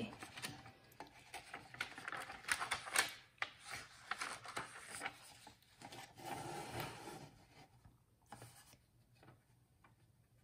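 A sheet of vellum being slid and repositioned on a plastic paper trimmer: irregular paper rubbing and rustling with small plastic clicks and taps, quieter over the last couple of seconds.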